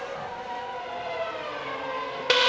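A Formula 1 car's 2.4-litre V8 engine heard over the trackside broadcast sound: a high, steady engine note that glides slowly down in pitch.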